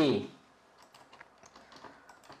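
Faint keystrokes on a computer keyboard, several light taps in irregular succession.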